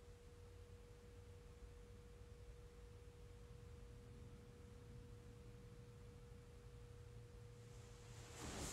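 Near silence: room tone with a faint, steady, single-pitched hum.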